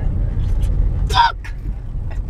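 Inside a moving car: steady low rumble of the engine and road noise in the cabin, with a short voice sound about a second in.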